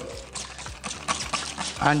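Hand trigger spray bottle spritzing water several times in quick short hisses, misting runny chalk paint so it trickles.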